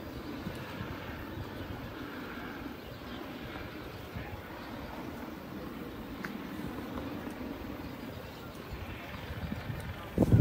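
Steady low drone of a helicopter overhead, running evenly throughout.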